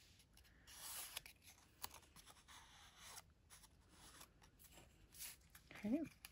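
Faint rustling and light scraping of a thin patterned paper strip being handled and laid across other paper on a card front, in short soft bursts.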